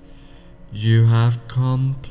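A man's voice speaking slow, drawn-out words, two long syllables starting about two-thirds of a second in, over soft steady background music.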